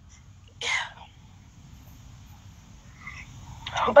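A short breathy puff from a person, like a sniff or sharp exhale, a little over half a second in, over a low steady background hum. A voice starts again just before the end.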